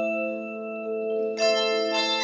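Handbell choir ringing: a held chord of bells sustains and slowly dies away, then a new chord of bells is struck about one and a half seconds in.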